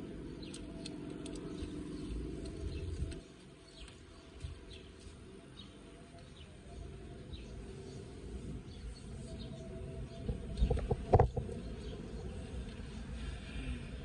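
Low road and engine rumble inside a car cabin as it drives slowly along a street, with faint bird chirps from outside. A few sharp thumps come late on, the loudest sounds in the stretch.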